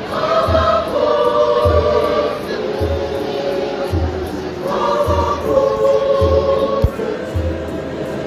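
A mixed choir singing in parts in long held chords, with a drum keeping a steady low beat about once a second.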